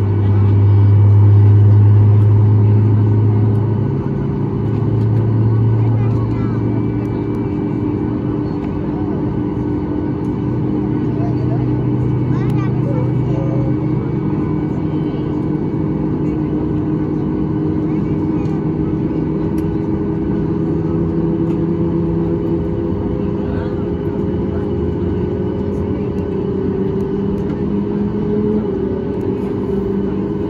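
Cabin noise inside a Boeing 737 MAX 8, heard from a window seat over the wing: the CFM LEAP-1B engines running at low ground power, a steady drone with several held tones. A deep hum fades after the first few seconds, and some of the tones drift slightly in pitch.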